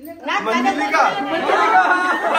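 Several people talking at once: loud, overlapping chatter.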